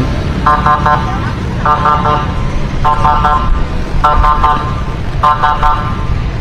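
Pedestrian crossing signal sounding its walk tone: five electronic beeps, evenly spaced about a second apart, over the steady rumble of motorbike and car traffic.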